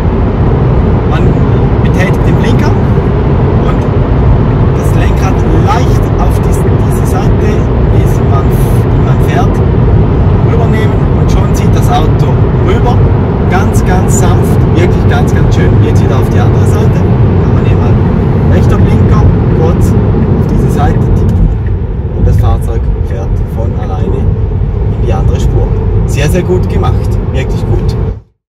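Steady loud road and tyre/wind noise inside a Tesla Model 3's cabin at about 100 km/h in a road tunnel. There is no engine sound from its electric dual-motor drive. The higher part of the noise thins about three-quarters of the way through.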